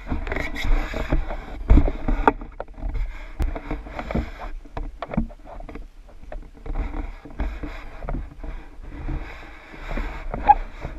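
A leaf-rake pool net on a telescopic pole being pushed through swimming-pool water: sloshing and splashing, with frequent knocks and clicks from the pole and net frame.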